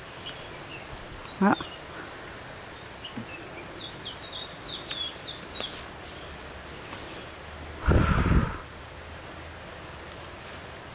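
Outdoor bush ambience with a steady low hiss, in which a bird gives a quick run of about eight high chirps around the middle. About eight seconds in comes a brief loud thump, the loudest sound here.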